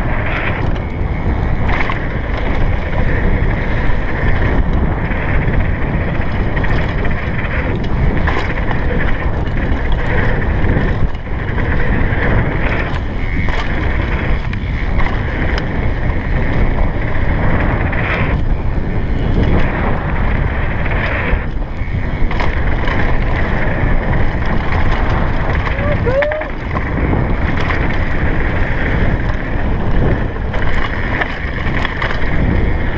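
A downhill mountain bike ridden fast down a dirt trail: steady wind rush on the GoPro microphone and tyre roar, with the bike rattling and knocking over bumps throughout. About 26 s in, a brief squeal bends in pitch.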